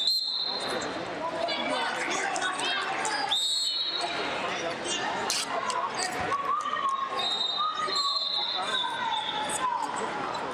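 Busy wrestling-hall ambience: echoing voices and chatter with scattered thuds, cut through by long, high referee whistle blasts, one at the start, one about three and a half seconds in and a longer one near the end.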